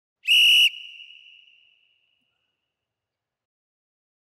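A single short whistle blast, about half a second long and shrill, ringing away over the following second: the timer's ten-second warning before the next round starts.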